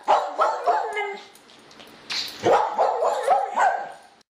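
An animal's short yelping calls, several in quick succession near the start and another run from about two seconds in.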